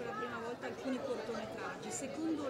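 Indistinct voices talking, with a background chatter of people.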